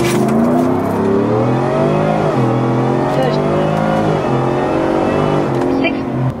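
Ford F-150 pickup's engine under full-throttle acceleration in a 0–60 mph run. Its pitch climbs, drops back at upshifts about two and four seconds in, and climbs again.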